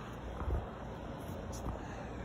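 A few faint small knocks, the strongest about half a second in, over a low steady background noise.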